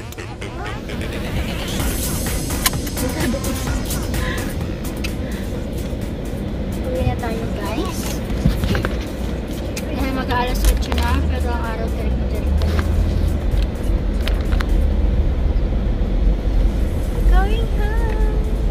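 Background music mixed with voices. From about ten seconds in, the low rumble of a car's interior on the move joins it.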